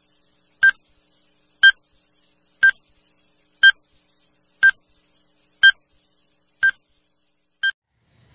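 Countdown timer beeping once a second: eight short, high beeps with silence between, the last a little quieter.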